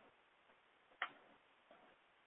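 Near silence: room tone, with a single short click about a second in.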